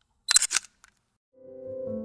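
Camera shutter click sound effect, a quick sharp double click, followed by soft piano music fading in during the second half.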